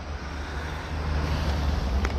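Low, steady wind rumble on the phone's microphone, with some handling noise as the camera moves.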